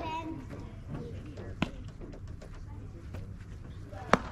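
Outdoor ballfield background of faint, distant voices, with one sharp knock about one and a half seconds in.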